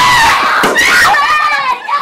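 Loud, high-pitched screaming voices: a long held shriek, then wavering shrieks that fade near the end.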